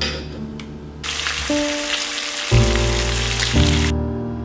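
Food sizzling as it fries in a hot pan, starting about a second in and cutting off sharply just before the end. A brief knife cut through a tomato comes at the very start.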